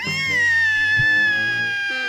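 A cartoon girl's voice giving one long, loud, high wail, starting sharply and sliding slowly down in pitch, held throughout.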